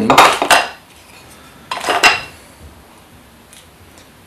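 Metal clinks and clatter as a bench vise is opened and the aluminium RA axis housing of a Skywatcher NEQ6 mount is lifted out of it: a loud cluster of knocks at the start and a second, shorter clatter about two seconds in.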